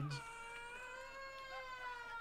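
A young child's long, high wail: one held note that sinks slowly in pitch.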